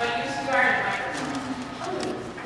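Children's voices making drawn-out vocal sounds without words, rising and falling in pitch.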